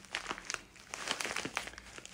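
A packet of frozen minced meat wrapped in a terry towel crinkling and rustling as it is pressed and shifted against the cheek, a quick irregular run of crackles.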